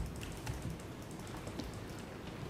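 Faint, irregular light clicks and taps, a few each second, over a steady low hum.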